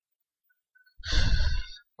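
Near silence, then about a second in a single breathy exhale, a sigh, lasting under a second.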